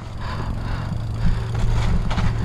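Yeti SB6 full-suspension mountain bike rolling over a dirt and rock trail: steady tyre and frame rattle with wind rushing over the camera microphone, and a few sharper knocks in the second half.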